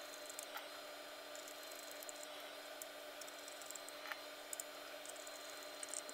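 Faint, scattered clicks and light scraping of a hand screwdriver turning small screws into an SSD's metal drive caddy, over a low steady hiss.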